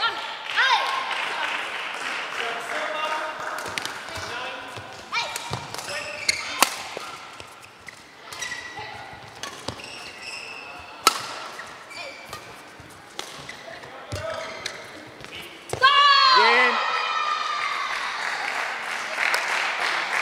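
Badminton rally: sharp racket strikes on the shuttlecock at irregular intervals, with players' calls, ending about sixteen seconds in with a loud shout from the players, followed by applause.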